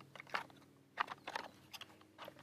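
Wooden upper handguard of a G43 rifle being pressed back into place over the gas system by hand: a few faint clicks and scrapes of wood against metal.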